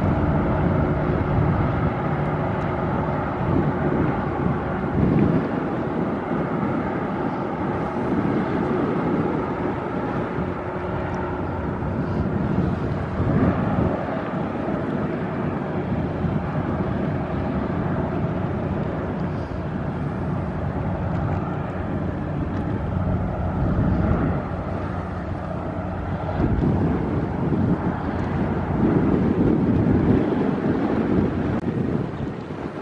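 Chemical tanker's engine running with a steady low drone as the ship passes close by. Gusts of wind buffet the microphone now and then.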